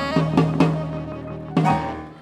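A small rhythm-and-blues band with electric keyboard and drums playing the closing hits of a song: three quick accented chords with drum strikes near the start, then a last hit about a second and a half in that rings out and fades.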